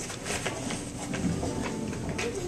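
Quiet room noise on a stage, with faint shuffling and a few light knocks as people move about.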